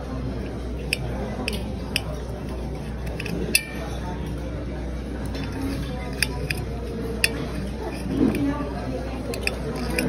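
Knife and fork clinking and scraping against a ceramic bowl while cutting lobster, with several sharp separate clinks, the loudest about three and a half seconds in, over a steady murmur of voices in the dining room.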